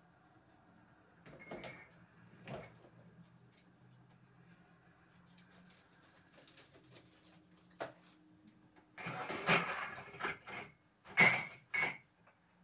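Bottles and food containers being moved about in an open refrigerator: a few scattered knocks and clinks, then a louder run of clattering and rattling in the last three seconds.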